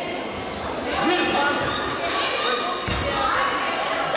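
Several voices shouting and calling across an echoing sports hall, with one dull thud about three seconds in.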